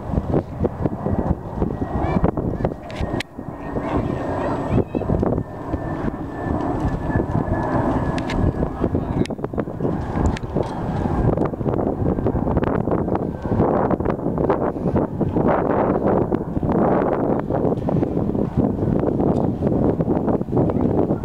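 Airbus A321 jet airliner on final approach with gear down. Its engine whine sinks slowly in pitch, and the rumble grows louder over the last few seconds as it passes. Wind buffets the microphone.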